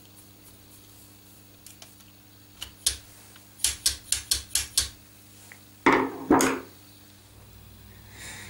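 Small sharp clicks and taps of hard plastic and metal parts being handled. There are a few near three seconds, then a quick run of about eight over a second and a half, and two duller knocks around six seconds, over a faint steady hum.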